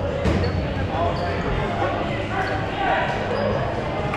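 Foam dodgeballs thudding on the gym floor and off players, a few sharp hits among the echoing voices of players in a large gym hall.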